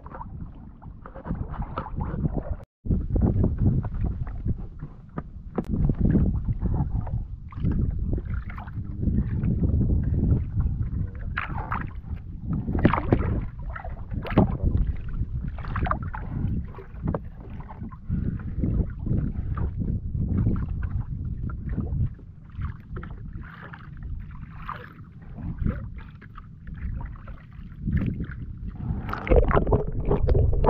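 Sea water sloshing and splashing irregularly against the wooden hull of a small outrigger boat, heard close to the water's surface.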